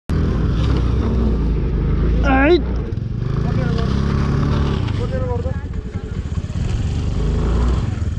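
A motor scooter's engine running on a rough climb, its pitch drifting up and down, with a person calling out loudly over it about two and a half seconds in and a shorter call about five seconds in.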